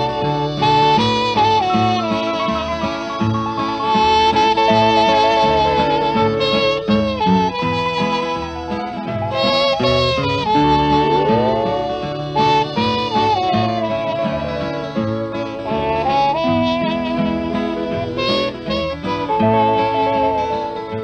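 Instrumental break of a 1944 country record by a band of guitars, steel guitar, fiddle and trumpet: a lead instrument plays a melody of held notes, twice sliding up into a long note, over a steady strummed rhythm and bass.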